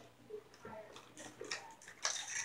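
Faint, scattered light clicks and taps from plastic wrestling action figures being handled and moved on a toy ring mat.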